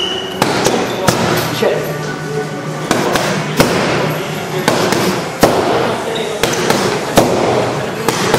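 Punches landing on a coach's boxing pads: sharp smacks at an uneven pace, about eight, some in quick pairs, over a background of voices and music.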